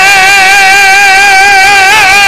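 A male zakir's voice holding one long, high chanted note with a slight waver, drawn out at the end of a line of recitation.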